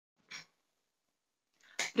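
Near silence broken by one short, faint breath-like hiss; a woman starts speaking just before the end.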